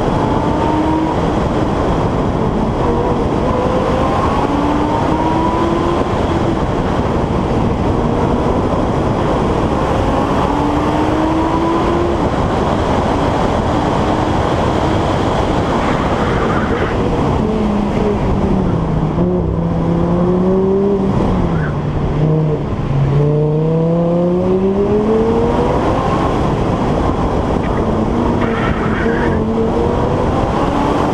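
Audi convertible's engine accelerating hard through the gears, its pitch rising and falling back in steps, under heavy wind and road noise on the outside-mounted microphone. About two-thirds of the way through the engine note sags, then climbs again steeply as it pulls away.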